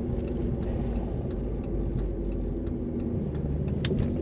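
Dodge Charger SRT Hellcat's supercharged 6.2-litre Hemi V8 running at low revs as the car slows, heard inside the cabin as a steady low rumble. A light, regular ticking comes about three times a second.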